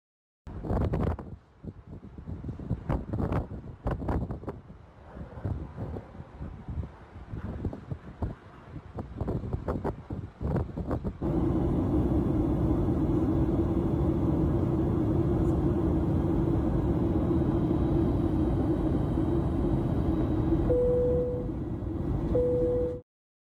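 For the first half, irregular gusting rumbles and knocks. About halfway it changes suddenly to the steady rush of jet airliner cabin noise, engine and airflow as heard at a window seat, with a short steady tone near the end.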